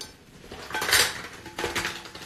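Small hard objects clinking and rattling as a hand rummages through a handbag, loudest about a second in and again near the end.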